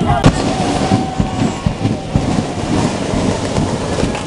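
Firecrackers going off in a rapid irregular crackle, with one sharp loud bang about a quarter of a second in.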